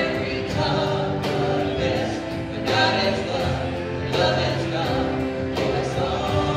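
Live contemporary worship band: mixed male and female voices singing together over keyboard and acoustic guitar, with a steady rhythmic beat.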